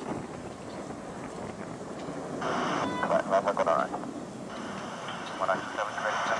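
Steady rushing noise of a jet airliner climbing away after takeoff, with wind on the microphone. Nearby voices come in on top of it about halfway through and again near the end.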